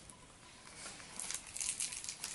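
Paper rustling and crinkling as a small cardboard blind box is opened and its tissue paper is pulled out. It is faint at first and grows busier in the second half.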